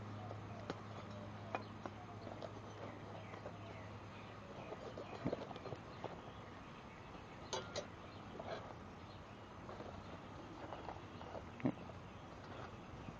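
Faint handling noise: a few scattered clicks and knocks, over a low steady hum that stops about four seconds in.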